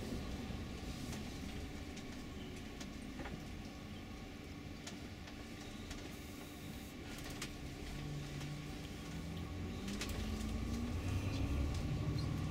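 Inside a tour bus on the move: steady engine and road rumble with a few light rattles and clicks. Near the end the engine note rises and the noise grows louder as the bus picks up.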